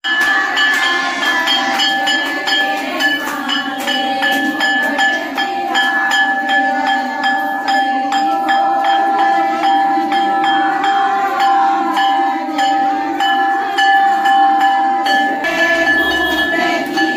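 Temple bell struck rapidly and without a break, its ringing tone held steady until it stops about a second before the end, over a crowd of women singing a devotional hymn.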